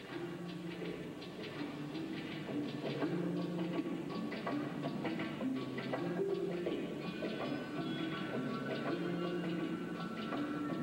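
Figure skater's short-program music: a melody of held notes stepping up and down, with many quick, short notes over it.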